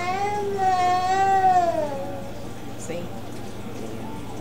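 A young girl's long whine, one drawn-out pitched cry that rises and then falls over about two seconds.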